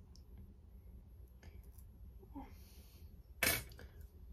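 Hands working through hair with hair extensions: faint clicks and rustles, then one short, loud rasp about three and a half seconds in. The hair extensions make the rasping noise as the hands pass through.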